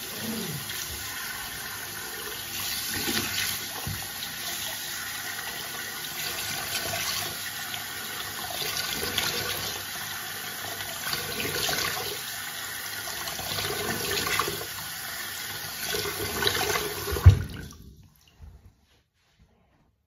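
Water running from a bathroom tap into a sink while hands splash it onto a face, with repeated louder splashes. A sharp knock comes about 17 seconds in, and the running water stops just after it.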